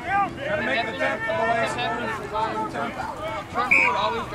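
Several voices calling out at once across a rugby pitch, players and onlookers shouting over each other with no clear words. A brief high-pitched note stands out near the end.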